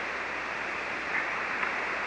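Steady hiss of static from a ham radio receiver tuned to a 40-metre single-sideband signal, with no voice on it.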